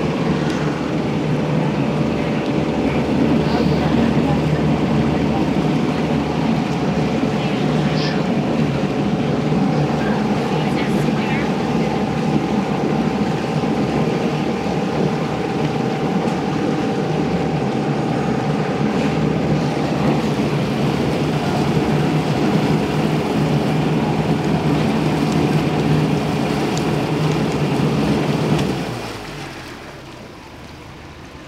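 Engine of a Tom Sawyer Island raft running steadily under way, with a low hum and water churning in its wake. About a second and a half before the end the engine sound falls away sharply as the raft slows.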